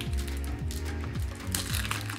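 Background music with a steady beat, over the crinkling of a plastic chocolate bar wrapper being torn open by hand.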